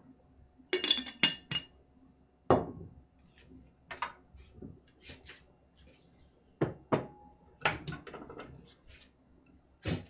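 Handmade stoneware pottery being handled and set down: a few sharp, ringing clinks about a second in, then scattered knocks of ceramic on ceramic and on the table.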